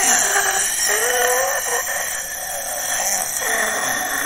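A cartoon goblin's shrill, drawn-out scream of agony, its pitch wavering, the wail of a creature dying from a magical insult.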